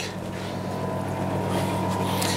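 Steady low hum with a light hiss from fish-room aquarium equipment: air pumps and filters running continuously.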